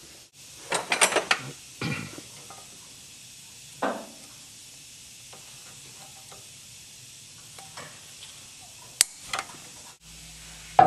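Hand tools clinking against steel suspension parts as a ball-joint castle nut is turned and a cotter pin is fitted with pliers. There is a quick cluster of metal clicks about a second in, single knocks near two and four seconds, a few faint ticks, and one sharp click near the end.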